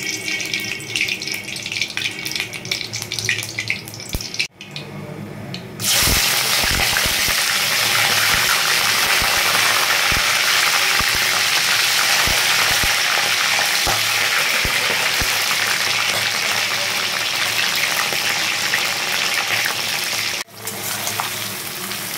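Giant freshwater prawns sizzling in hot oil in a kadai. A lighter sizzle at first gives way, about six seconds in, to a loud, dense, steady sizzle as the prawns fry, which cuts off sharply near the end.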